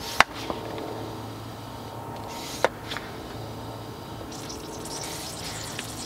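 Hand tire pump worked in strokes, pushing air into a car's cooling system through a modified radiator cap. There is a sharp click near the start and another mid-way, with short airy hisses of the strokes. From about four seconds in comes a crackly hiss of coolant starting to bubble out at the loosened upper radiator hose clamp: the pressurized system is leaking.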